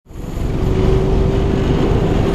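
Diesel locomotive engine running at idle: a steady low rumble with a steady hum above it.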